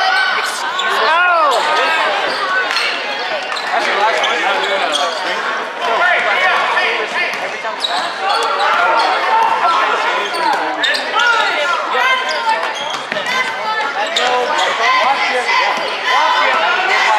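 Basketball being dribbled on a hardwood gym floor, with sharp bounces, over steady crowd chatter in a large gymnasium.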